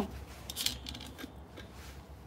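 Faint, brief scratching or rubbing noises about half a second in, over a steady low hum.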